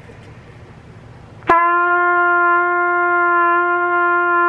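A trumpet plays a single steady open G with a sharp tongued start about one and a half seconds in, then holds it evenly as a whole note, blown with relaxed lips.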